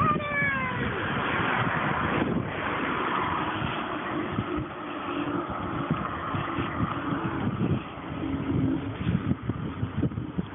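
Wind rushing over the microphone and road noise from riding a bicycle along a paved road, with the rush of passing traffic swelling for several seconds and easing off near the end. A brief falling whine-like sound comes right at the start.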